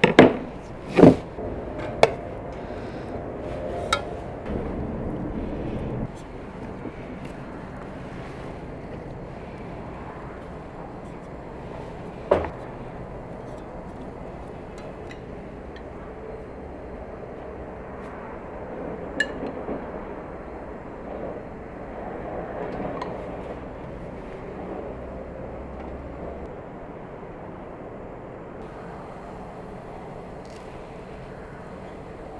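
Kitchen handling sounds: a few sharp knocks in the first four seconds, then mostly steady background noise with soft handling of potato wedges in an aluminium pot. Single clinks come later, one of them a metal spoon against a glass jar of tomatoes.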